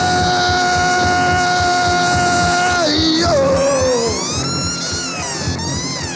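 Lo-fi noise-punk rock band playing a country-song cover. A long steady held note lasts about three seconds, then gives way to sliding, wavering pitches over the band.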